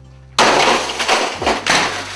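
Loud crashing and smashing of office equipment being struck, starting suddenly about half a second in, with several blows and breaking clatter.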